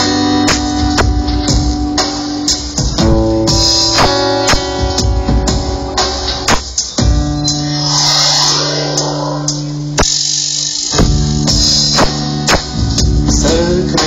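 Live experimental folk-electronica music: a steady beat about twice a second under sustained pitched tones and plucked strings. About two-thirds of the way through, the bass and beat drop out for about a second, then come back.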